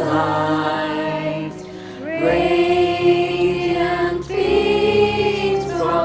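Youth choir of young voices singing together over a backing track, holding long notes, with a short break between phrases about two seconds in.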